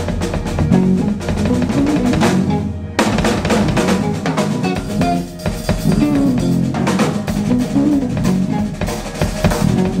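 Live fusion band playing: a Tama drum kit with bass drum, snare and Zildjian cymbals, driving over electric bass. The cymbals drop out briefly just before three seconds in, and then the full band comes back in together on a hit.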